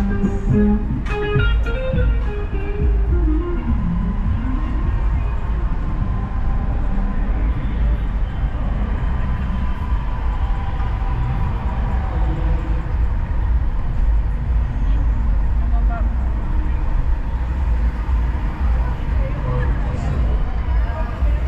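Steady low rumble of a car driving along a city street, with music and voices heard over it.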